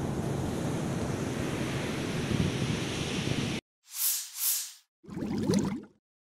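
Steady noise of surf and wind on a phone's microphone, cut off abruptly about three and a half seconds in. Then two quick whooshes and a short rising swoosh from an outro sound effect.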